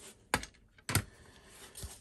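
Hard plastic graded-card slabs clicking as they are handled and swapped: two sharp clicks about half a second apart, then a fainter one near the end, with light rustling of handling between them.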